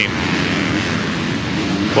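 Motocross bikes running on a dirt track, a steady engine drone with no single pass standing out.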